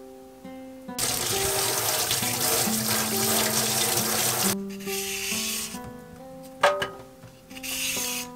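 Kitchen tap running through a pull-out spray head onto hands and a carrot being rinsed, splashing into a stainless steel sink. The water runs loud for about three and a half seconds from about a second in, then comes in shorter, quieter spells.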